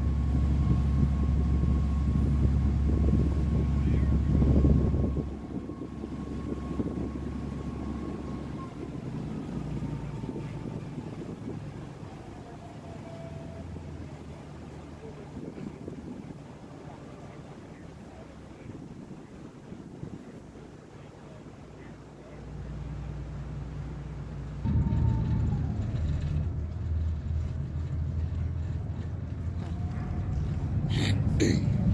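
A car ferry's engine running with a steady low hum as it crosses the river. About five seconds in, it is throttled back and runs quieter as the ferry coasts in toward the landing. Near the end it powers up again in two steps as the ferry manoeuvres onto the dock.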